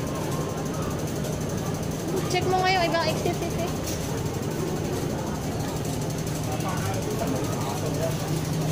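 Steady hum and background noise of an underground metro station concourse, with a brief voice about two and a half seconds in.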